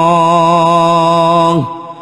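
A man chanting an Arabic ruqyah supplication, drawing out the last syllable of a phrase as one long, slightly wavering melodic note. The note slides down and fades about one and a half seconds in, leaving a short breath pause.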